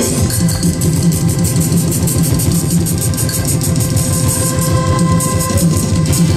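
An accordion orchestra playing live: several accordions sounding a tune together over a steady beat.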